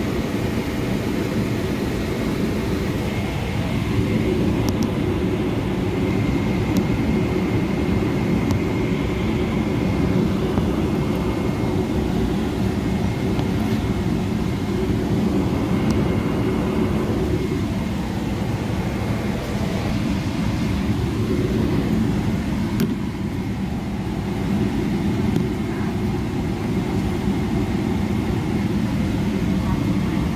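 Steady cabin noise inside a parked Boeing 777-300ER: a low, even hum of the air-conditioning and ventilation, with a faint steady high whine running through it.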